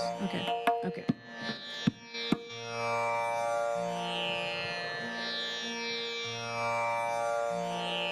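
Sustained drone for an Indian classical raga performance, its low note alternating between two pitches. A few sharp taps sound in the first two and a half seconds, before the voice comes in.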